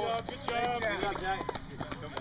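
Spectators' voices calling out, over the footfalls of runners on a rubberized running track.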